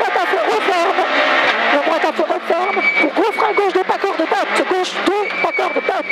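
Peugeot 106 F2000 rally car's four-cylinder engine at full throttle, heard from inside the cabin, its pitch climbing and dropping repeatedly as it is driven flat out.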